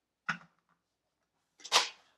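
Plastic LEGO pieces handled on a tabletop: a light click about a quarter-second in, then a brief, louder clack-and-rustle near the end as a roof piece is fitted onto the toy van.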